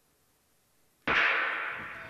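Near silence, then about a second in a single sharp starter's gun shot that starts the 400 m race, ringing and fading through the indoor arena.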